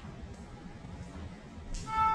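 Quiet, steady room noise, then background music coming in just before the end.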